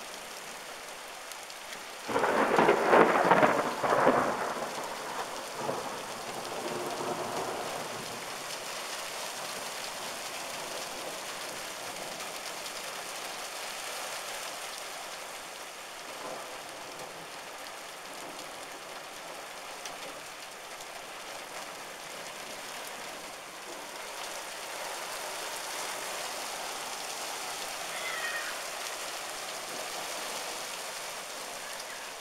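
A clap of thunder breaks about two seconds in, loud for a couple of seconds, then rumbles away over the next few seconds. Under it, a heavy downpour of rain and hail hisses steadily on parked cars and tarmac.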